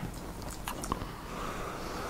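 Wet mouth clicks and lip smacks as vape vapour is worked around the mouth, then a long, soft exhale of vapour starting about a second in.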